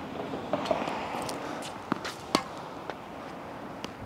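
Tennis balls being struck and bouncing on a hard court: a few separate sharp pops of ball on racket strings and on the court surface, the clearest a little past two seconds in.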